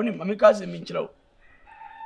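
A rooster crowing once, in a few connected notes lasting about a second.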